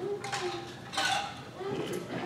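A man drinking from a metal tumbler, with light clinks and knocks of the tumbler being handled and a sharper knock about a second in.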